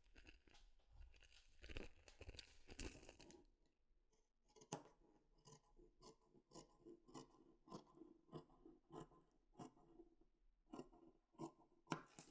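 Scissors snipping through wool-cashmere knit fabric, quiet, in a steady run of cuts about two a second, after a few seconds of fabric rustling.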